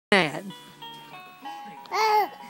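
Electronic baby toy playing a simple tune of clear, steady electronic notes that step from pitch to pitch. A loud voice exclaims right at the start, with falling pitch.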